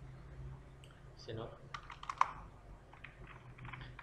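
Computer keyboard keys being pressed, a short run of keystrokes about two seconds in with one sharper, louder click among them, while text is deleted in a code editor. A low steady hum runs underneath.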